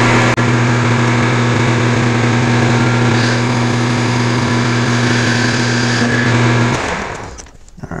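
Metal lathe running with a steady hum while taking a light facing cut on a steel shank, then winding down and stopping near the end.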